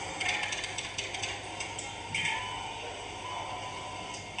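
Soundtrack of a video played over an auditorium's speakers: runs of quick clicks and clatter, mostly in the first half, over faint music.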